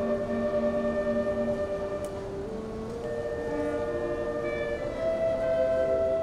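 Concert band of woodwinds and brass playing slow, sustained chords, with held notes that shift every second or two.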